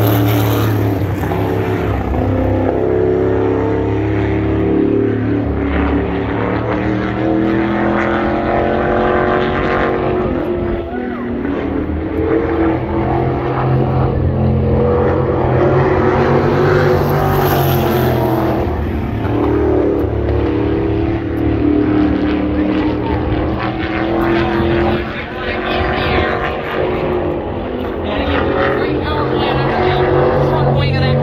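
Winged sprint car with a crate engine running hard on its qualifying laps. The engine note rises and falls over and over as it goes around the oval.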